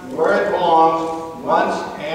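Only speech: a man delivering a speech over a microphone.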